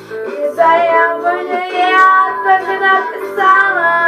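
A young girl singing a song with backing music, holding long notes that bend up and down in pitch.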